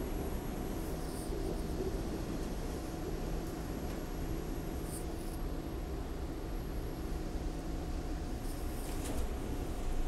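Toronto subway train running, heard from inside the car: a steady rumble of wheels on rails with a thin steady whine over it and a few faint ticks.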